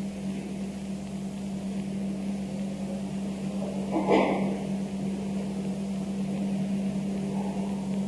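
Steady low electrical hum over even hiss, the background of an old analogue recording made through a microphone and sound system. There is one brief soft noise about four seconds in.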